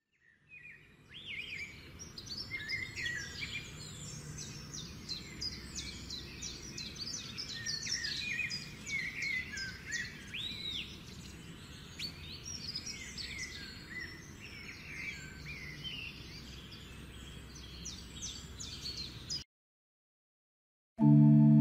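Many birds chirping and calling together over a low, steady background noise. The chorus fades in about a second in and cuts off abruptly shortly before the end.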